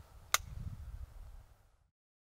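A single sharp plastic click as the memory card is taken out of the camera trap, over a low rumble of wind and handling noise.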